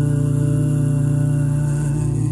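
A cappella male vocal group holding the final chord of a Christmas carol arrangement, a strong low bass note beneath steady upper voices.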